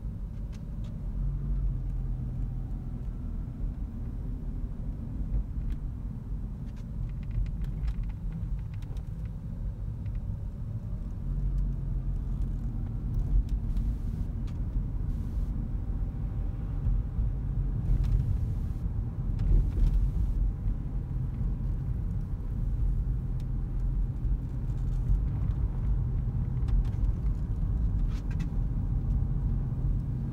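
Cabin noise of a Toyota Auris Hybrid Touring Sports on the move: a steady low road and tyre rumble, growing a little louder about halfway through.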